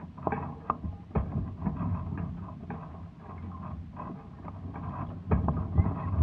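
Hobie 16 catamaran sailing slowly in light wind: irregular small clicks and knocks from the hulls and fittings over a low rumble of water. The knocks get louder and closer together near the end.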